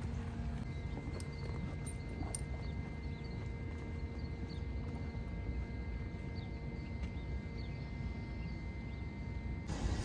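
Footsteps on a boardwalk deck, with wind rumbling on the microphone and a faint steady hum.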